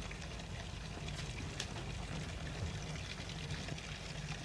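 Water running steadily from a tap, fairly faint, with a couple of light clicks about a second in.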